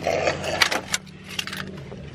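Small metal pieces clinking and clicking, with rustling of clothes, inside a car cabin. A low steady hum underneath stops shortly before the end.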